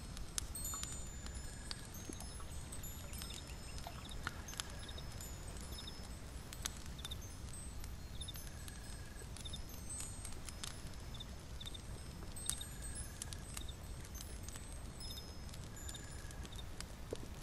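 Layered fantasy ambience soundscape: a steady low rumble under scattered high, chime-like tinkles and light clicks, with a short mid-pitched tone that recurs every few seconds.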